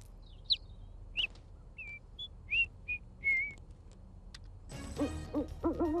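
A small bird chirping: about eight short, high chirps over the first three and a half seconds. Near the end a television comes on with low, repeated cooing calls over a backing sound.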